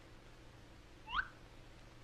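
Faint steady hiss and low hum of an old film soundtrack, with one short squeak gliding upward about a second in.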